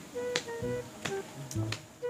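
Background music of short sustained notes punctuated by a few sharp snap-like clicks.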